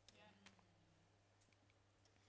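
Near silence: room tone with a steady low hum and a few faint clicks.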